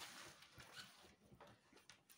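Near silence, with faint soft rustles and light taps of cards being handled over a tabletop.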